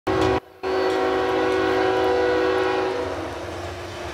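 Freight locomotive's air horn sounding a chord as the train approaches: a short blast, a brief break, then a longer blast that fades away about three seconds in.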